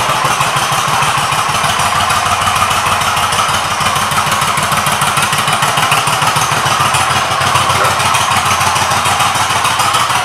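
1996 Suzuki Intruder 1400's V-twin idling steadily through aftermarket exhaust pipes.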